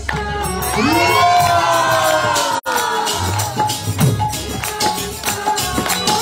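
Kirtan band playing: small brass hand cymbals (kartals) keep a steady jingling beat over held harmonium notes and low drum strokes. For the first couple of seconds voices in the room whoop and cheer in long rising-and-falling calls. The sound cuts out for an instant just before the middle.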